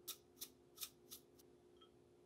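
Sesame seeds rattling in a shaker jar shaken over a bowl: five short, crisp rattles about a third of a second apart. A faint steady hum runs underneath.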